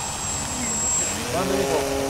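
A laugh and voices over the faint drone of a distant electric radio-controlled model plane's propeller, an E-flite Piper J-3 Cub 25.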